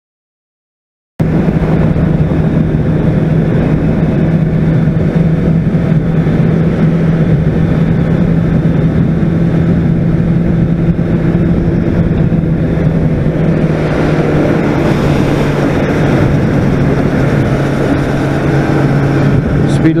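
About a second of silence, then a Honda CBR600RR's inline-four engine running at a steady cruising speed, heard from a helmet camera with wind rushing over the microphone.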